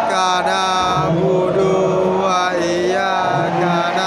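A group of football supporters singing a chant together, a sustained melodic song carried by many voices close to the microphone.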